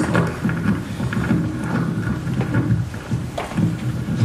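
Microphone handling noise: a low, irregular rumbling and crackling with a few soft knocks.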